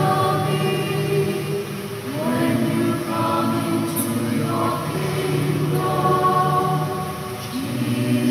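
Mixed church choir singing slow, held chords, the notes changing every second or two.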